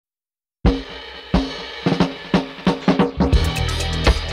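Reggae song intro: after about half a second of silence, a drum kit plays a fill of snare and bass-drum hits that come faster and faster, and near the end the bass and the rest of the band come in.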